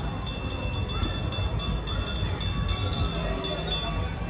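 Trackless tourist road train driving past, its bell ringing in a steady run of about four strokes a second over a low engine rumble.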